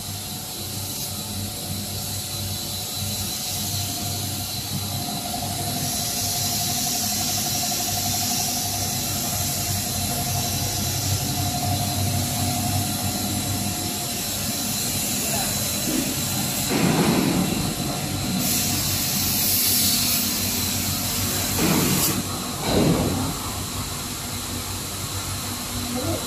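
PE pipe extrusion line running: the motors and pumps give a steady hum with a constant high tone and a hiss that swells at times. A whine is heard through the first half, and a few short louder noises come about two-thirds of the way in.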